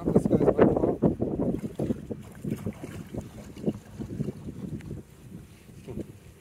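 Gusty wind buffeting the microphone, with water moving at the surface. It is loudest in the first second and a half, then eases.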